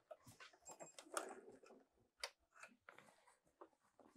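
Near silence after the sewing machine stops, with faint scattered clicks and short rustles as fabric is handled and drawn out from under the presser foot.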